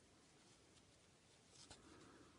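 Near silence: room tone, with faint handling sounds of a metal crochet hook working acrylic yarn, and a faint click about three-quarters of the way through.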